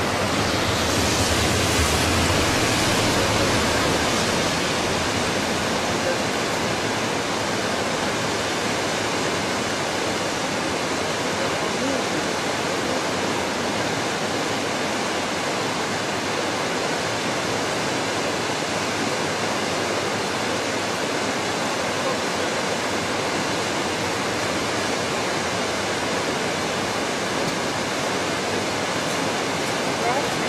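Steady rushing of a river below a bridge, an even hiss of flowing water, with a deeper rumble swelling in the first few seconds.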